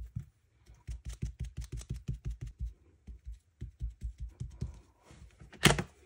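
A handheld ink dauber tapped rapidly, about eight taps a second, pouncing toffee ink through a stencil onto paper, in two runs with a short pause between them. A louder short clatter comes near the end.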